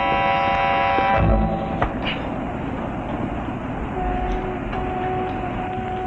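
A sustained music chord ends about a second in, giving way to a noisy street-traffic sound effect with a brief low rumble. From about four seconds a steady, horn-like held tone sounds.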